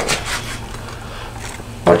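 Spatula sliding and scraping under a grilled cheese sandwich on a ridged grill pan as it is flipped: a short knock near the start, then a soft rubbing scrape over a low steady hum.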